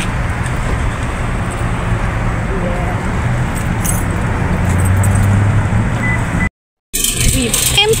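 Steady rumble and rattle of a metal shopping cart rolling over parking-lot asphalt, with a low vehicle-engine hum under it that swells a little later on. The sound cuts off abruptly about six and a half seconds in; rattling and a voice start again just before the end.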